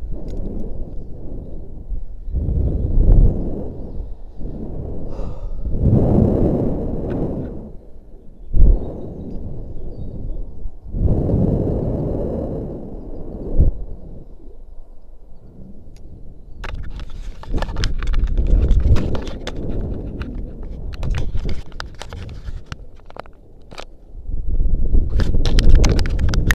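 Wind buffeting the action camera's microphone while a rope jumper swings on the rope below a tall tower. The rumble swells and fades repeatedly with the swing. From about two-thirds of the way through, crackling rubs and clicks of hand, rope and camera mount join in.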